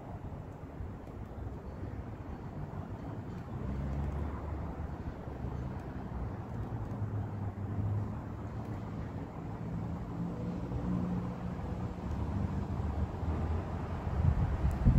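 Outdoor ambience with the low, steady hum of a distant engine, which grows louder a few seconds in.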